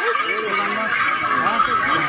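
A crowd of spectators shouting and calling out at once, many voices overlapping steadily, as small horses are raced across a meadow.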